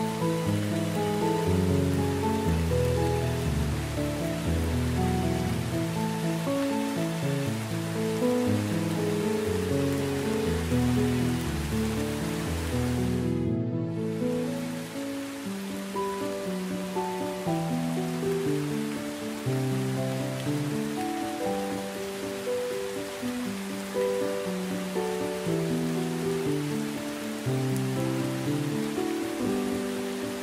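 Steady rain, an even hiss, mixed with slow melodic music of stepped notes. About halfway through, the deep bass notes drop out and the rain hiss dips for a moment before carrying on.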